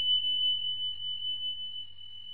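A single high bell-like ding from a subscribe-button animation sound effect: one steady pure tone that rings on and slowly fades.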